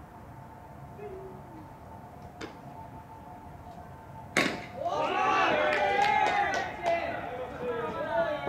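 A baseball bat hitting a pitched ball with one sharp crack about four seconds in, followed at once by several players shouting and calling out together.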